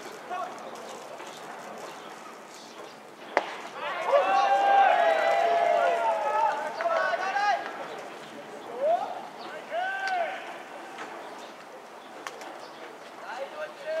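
Baseball caught in the catcher's mitt with a single sharp pop, followed at once by several voices shouting calls together for about three seconds. A few more single drawn-out shouts come later.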